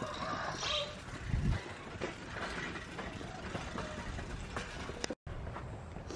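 Bicycle ridden over a bumpy dirt track: steady rattling and rolling noise with scattered clicks and a thump about a second and a half in, mixed with wind and handling noise on the camera microphone. It cuts off suddenly about five seconds in.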